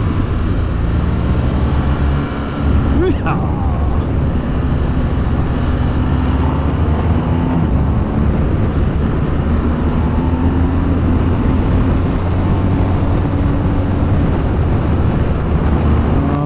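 BMW R1250GS boxer-twin engine pulling steadily along a winding road, its revs rising and falling gently, under heavy wind rush on the camera. About two and a half seconds in there is a brief dip as the throttle is rolled off.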